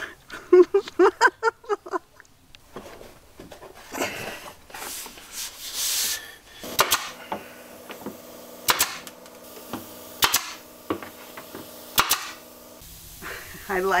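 Nail gun firing about five sharp shots into wooden stair trim, spaced one to two seconds apart, over a steady hum. Laughter comes first, and a hiss comes before the shots.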